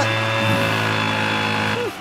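Petrol leaf blower engine running with a steady, loud drone. Its pitch drops away and the sound falls off near the end.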